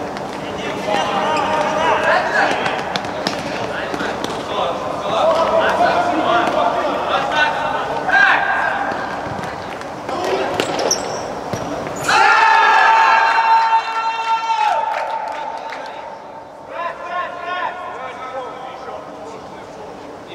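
Futsal ball being kicked and bouncing on an indoor hall floor amid players' and spectators' shouts. About twelve seconds in comes a sudden loud held tone lasting two to three seconds, after which the shouting carries on more quietly.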